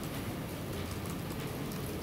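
Steady room noise: an even hiss with no distinct events.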